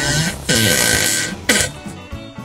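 A woman's drawn-out strained groan, falling in pitch, under a loud hiss, with background music beneath.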